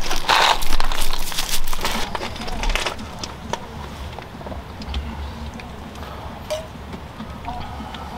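Loose beach gravel crunching loudly underfoot for about the first three seconds. After that comes a low outdoor rumble with a few light clicks of a metal spoon against a camp pot.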